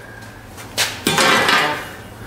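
Handling noise from flat steel plates being moved: a sharp click about three quarters of a second in, then a rushing scrape lasting just under a second.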